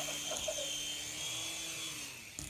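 Small remote-control toy helicopter flying, its electric motor giving a steady high whine over the buzz of the spinning rotor blades.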